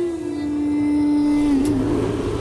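A woman singing one long held note over the backing music of a Sinhala pop song. The note wavers and drops away near the end as a low steady drone comes in.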